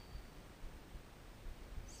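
Quiet room tone with faint, soft handling noise from fingers working through hair.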